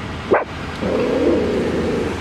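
A dog barking once, a short sharp call about a third of a second in, followed by a steady noisy sound lasting about a second.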